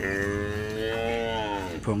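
Young Limousin calf mooing: one long, steady call that dips in pitch as it ends near the close.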